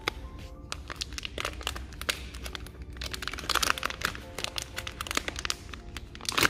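A plastic retail packet crinkling and crackling as it is handled and opened, in many quick crackles that are busiest about three to four seconds in. Soft background music plays underneath.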